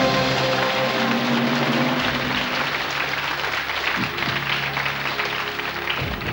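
Studio audience applauding over a game-show music cue that marks a correct answer, the clapping easing slightly toward the end.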